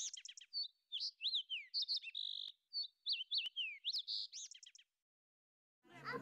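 Bird chirps and whistles: a quick run of high, sweeping calls that stops a little before five seconds in.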